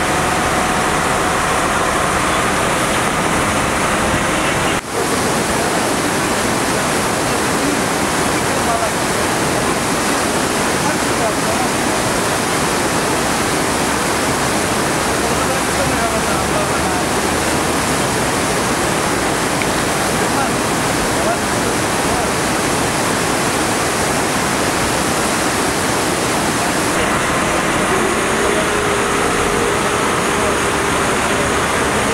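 Steady rushing of the flooded Evinos river, its brown floodwater churning past an eroding bank.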